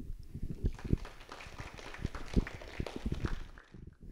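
Sparse applause from a small audience: a few people clapping unevenly, dying away shortly before the end.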